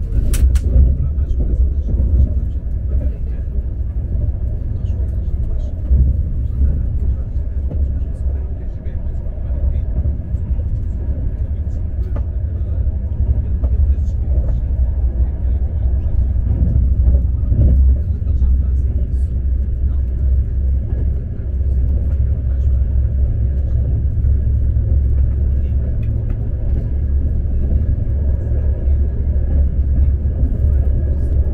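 Steady low rumble of an Alfa Pendular tilting electric train running at speed, heard from inside the carriage, with a faint steady high tone over it. A sharp click comes just after the start.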